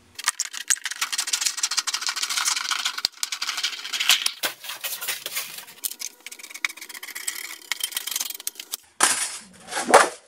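Hand tin snips shearing galvanized steel sheet along a marked line: a fast, continuous run of crisp clicks and metal-cutting noise, with the sheet rattling on the workbench.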